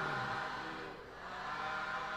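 Faint chanting voices, low and unsteady in pitch, as a Pali chant dies away.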